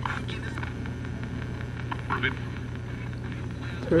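Ghost box radio scanner sweeping through stations: a steady hum and static with faint, brief snatches of voice cutting in and out, about two seconds in.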